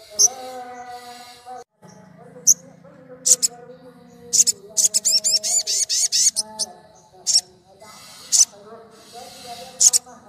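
Sunbird song: loud, sharp high chirps at irregular intervals, with a rapid trill of quick notes lasting about two seconds in the middle.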